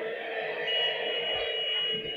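The echoing tail of a chant dying away in a public-address system, with a thin steady high whistle from the PA coming in about half a second in.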